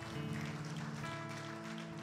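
Soft, sustained keyboard chords from a worship band, the chord changing twice, with faint scattered hand claps from the congregation.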